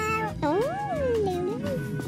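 A young child's voice meowing like a cat: one long meow that rises and then falls in pitch, over background music.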